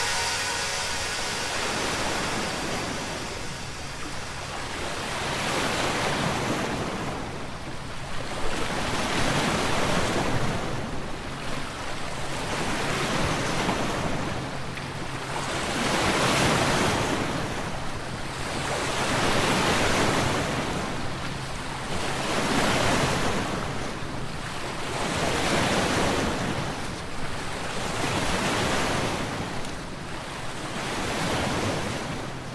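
Ocean surf on a beach: waves washing in and drawing back, swelling and fading about every three seconds.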